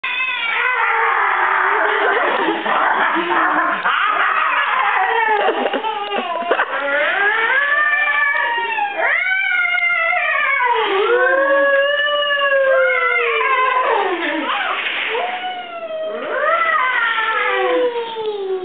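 High-pitched voices squealing playfully, one call after another in rising-and-falling glides that often overlap.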